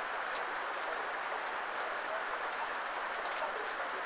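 Heavy rain falling steadily on a road and foliage, an even hiss with a few sharper drop ticks scattered through it.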